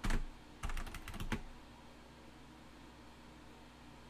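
Computer keyboard typing: one keystroke right at the start, then a quick run of about half a dozen keystrokes in the first second and a half.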